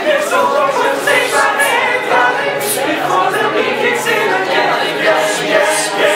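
A cappella group of male voices singing together, unaccompanied, steadily through the whole stretch.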